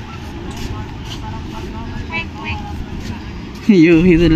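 Faint voices over a steady background rumble, then near the end a loud voice starts, sliding down into long, steady held notes.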